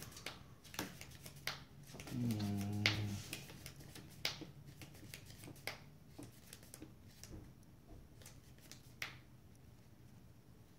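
Trading cards being handled and set down on a playmat: a scattered run of light clicks and taps. About two seconds in, a short low hummed voice, the loudest sound.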